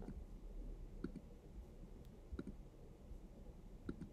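Faint computer clicks as an on-screen pointer selects: one near the start, a quick pair about a second in, one about two and a half seconds in and one near the end, over a faint low room hum.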